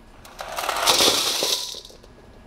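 Coarse rock pieces, the fraction retained on a No. 4 sieve, poured from a metal pan into a stainless steel bowl on a scale to be weighed. The stones make a rattling clatter against the metal that lasts about a second and a half.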